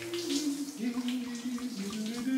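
Running water in a bath or shower, with a man humming a slow tune over it.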